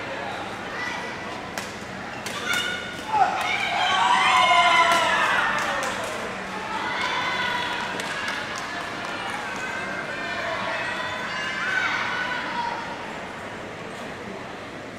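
Badminton rally in a sports hall: sharp racket strikes on the shuttlecock, high squeaks of shoes on the court floor, and voices in the hall. The loudest stretch comes about three to five seconds in.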